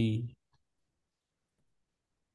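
A man's spoken word ending, then near silence with a single faint click about half a second in.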